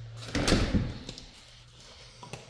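A house door being opened by hand: one short, loud burst of latch-and-door noise about half a second in.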